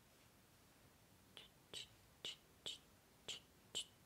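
A regular series of short, sharp clicks, about two a second, starting just over a second in.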